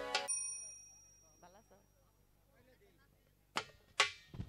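Live stage-band music cuts off just after the start, leaving a short metallic ring that fades within about half a second. Near silence follows, then two sharp drum strikes near the end.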